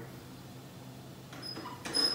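Backpack sprayer's pump handle being worked to build pressure in the tank: faint pumping strokes in the second half, with a sharp click near the end.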